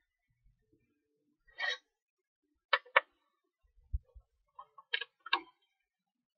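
Scattered small metallic clicks and ticks of a screwdriver working the screws in the Acer CXI Chromebox's metal bottom plate, a pair of them close together about three seconds in, with one soft low thump about four seconds in.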